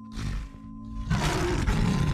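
Intro logo sound effect: a held musical drone, with a short rush of noise just after the start and then a louder, longer roar from about halfway through.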